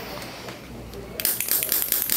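Crinkly rustling of something being handled at the foot, starting a little over a second in as a dense run of fine crackles.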